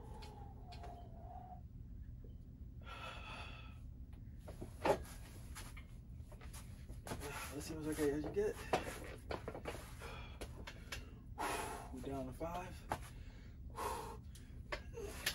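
A man straining and breathing hard through heavy barbell bench-press reps, with drawn-out grunts and a breathy exhale. One sharp knock about five seconds in is the loudest sound.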